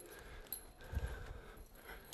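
A few faint knocks and light clatter as resistance-band handles and clips are picked up off the floor.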